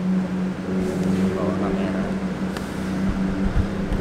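A steady, low motor hum holding one pitch, with faint voices in the background.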